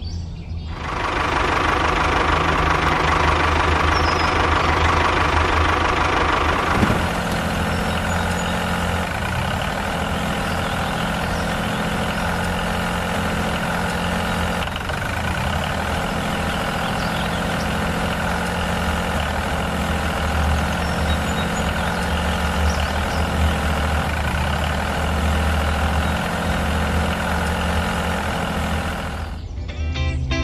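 Tractor engine running steadily with a low hum. It is louder and busier for the first six seconds or so, then settles to an even run.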